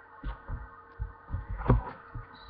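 Handling noise on a handheld camera's microphone: about five soft, low thumps at uneven spacing, the strongest near the end, over a faint steady hum.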